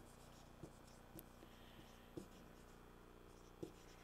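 Faint marker strokes and taps on a whiteboard as a word is written, a handful of soft short ticks in otherwise near silence.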